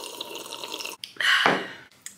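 A woman sipping a drink from a mug: soft slurping, then a louder short sound about halfway through that fades away.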